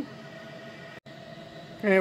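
Ninja Woodfire outdoor grill's fan running in Air Crisp mode: a steady hum with a thin whine, cut off for an instant about a second in.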